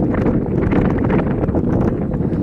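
Wind buffeting the microphone outdoors: a loud, steady rumble with crackling.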